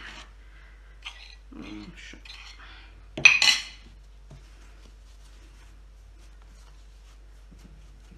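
A metal spoon clinking and scraping against a plate of powdered sugar, with one loud clatter a little over three seconds in, followed by faint ticks and rubbing as sugar is worked on a wooden board.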